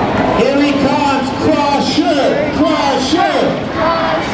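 Grandstand crowd shouting and cheering, many voices overlapping, with rising and falling yells throughout.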